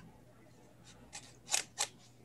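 Low room tone with a few short, sharp clicks, the two loudest close together about one and a half seconds in.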